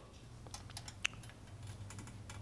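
A few faint, irregular little clicks over a low steady hum.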